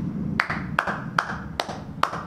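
One person clapping their hands in a steady rhythm, about five claps spaced evenly, roughly two and a half a second.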